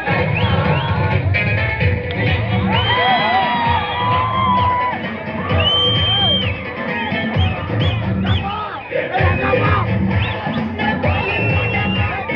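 A dance song playing loud over loudspeakers with a heavy beat. An audience is cheering over it, with several long, high whistles and shouts.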